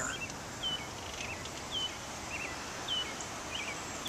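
A songbird singing short chirps, about two a second, alternating a falling note and a quick wavering note, over a steady background hiss.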